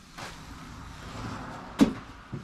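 A person moving about beside a parked motorcycle: a low shuffling rustle, then one sharp knock near the end, the loudest sound.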